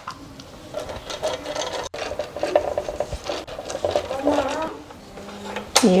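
Pastry brush spreading oil across the ridged grid plates of a Salter waffle maker, a fast rhythmic rubbing of strokes that stops about four seconds in.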